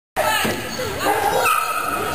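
A dog barking and yelping excitedly, with a drawn-out high yelp near the end, over people's voices.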